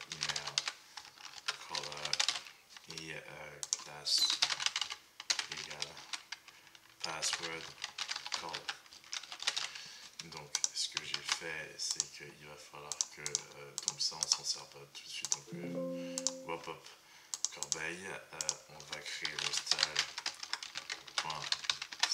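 Typing on a computer keyboard: key clicks in quick runs broken by short pauses.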